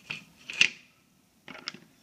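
A few sharp clicks and knocks of hard objects being handled. There is one just after the start, the loudest about half a second in, and a small cluster about a second and a half in.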